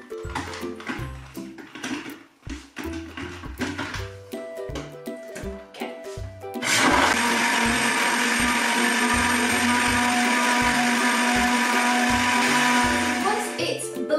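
Countertop blender switched on about halfway through, running steadily for about seven seconds as it blends whole lemons, sugar, ice cubes and water, then stopping just before the end. Background music with a steady beat plays throughout.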